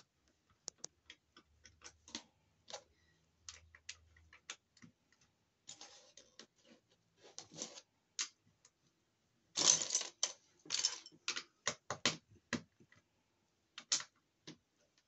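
Plastic Lego bricks clicking as they are handled and pressed together, a scatter of small sharp clicks. A denser, louder run of rattling clicks comes a little past the middle.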